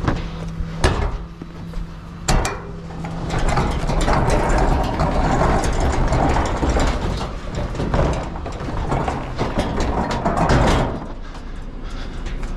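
Large four-wheeled plastic recycling bin being pushed across concrete, its castors rumbling and the bin body rattling, with a few sharp knocks in the first couple of seconds. A steady low hum, the dustcart's engine, runs underneath and is plainest near the start and end.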